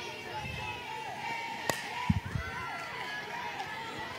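Softball bat hitting a pitched ball: a single sharp crack a little before halfway, over a steady murmur of crowd voices.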